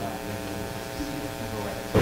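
Steady electrical hum, a buzz with many even overtones, with a faint low knock about a second in.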